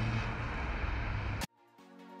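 Car engine and road noise from a car that has just pulled away, cut off abruptly about one and a half seconds in; after a brief silence, electronic music fades in.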